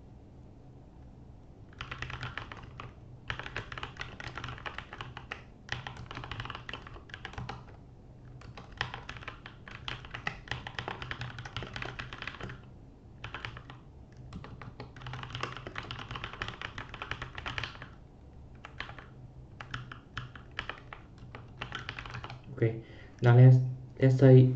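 Computer keyboard typing in quick bursts of key clicks, several seconds at a time with short pauses between.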